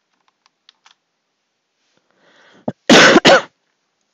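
A few faint mouse clicks, then a quick intake of breath and a loud two-part cough about three seconds in.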